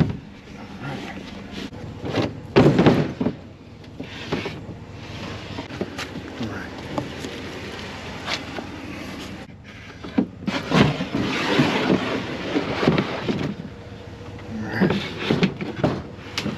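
A laminated wood cabinet being handled and slid into place, with irregular knocks and scraping. There is a loud spell of it about two and a half seconds in and a longer one from about ten seconds on.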